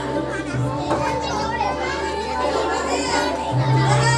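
A crowd of children's voices talking and calling over one another, with music playing underneath.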